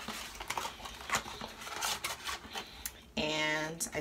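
Packaging of a Crest 3D Whitestrips pack being opened and handled: a run of quick crinkles, tears and clicks. Near the end a woman makes a short, held 'mmm'.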